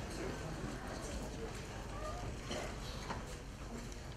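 Shoe footsteps on a hard floor as several people walk past, with a few sharp steps standing out, over low murmuring voices.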